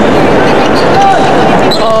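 Crowd noise in an indoor arena during a volleyball rally, with the thuds of the ball being dug and spiked. A commentator exclaims "Oh" near the end.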